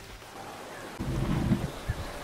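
Low, deep rumbling growl of a Tyrannosaurus rex (a designed dinosaur vocalisation), starting about a second in, with a short thud near the end.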